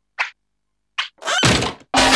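Cartoon sound effects: short, soft tiptoe-step hits about a second apart, then a loud burst of crashing noise about a second and a half in.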